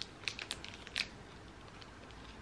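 A protein bar in its foil wrapper being bitten and chewed close up: a few short, sharp crackles and clicks in the first second or so, then faint.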